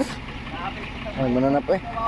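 Low, steady engine rumble of a pickup towing a loaded truck on a rope, with a person's voice speaking briefly a little after a second in.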